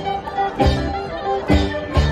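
Live folk-rock band playing an instrumental stretch between sung lines: electric guitar, bass guitar and drum kit, with two strong drum hits.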